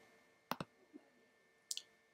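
Computer mouse button clicked once, a quick sharp press-and-release about half a second in.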